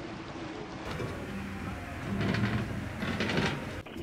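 A motorboat running on the river, its motor a steady mechanical drone with water churning and rushing past the hull.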